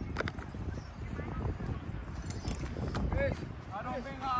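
Shouted calls from soccer players on the field, two short calls near the end, over a steady low rumble of outdoor noise with a few faint knocks.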